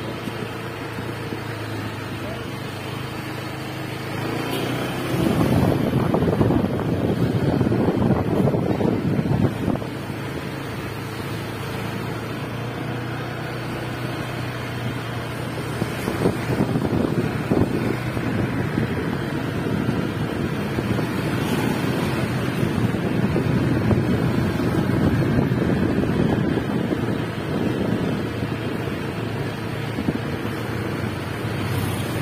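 Wind buffeting the microphone over the steady running of a motor scooter riding along a street. It grows louder for about five seconds starting some four seconds in, and again from about sixteen seconds on.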